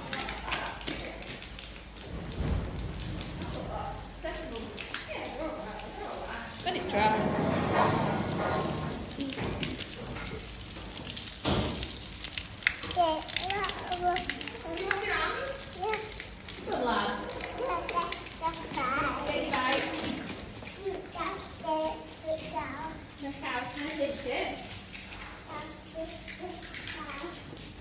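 A toddler babbling and calling out while playing in water, with water running and spattering onto a concrete floor.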